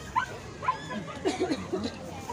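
A dog whimpering and yipping in several short, high calls, with voices in the background.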